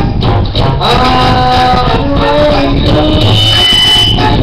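Karaoke: a loud backing track plays through home speakers while a man sings along into a handheld microphone, holding and bending long notes.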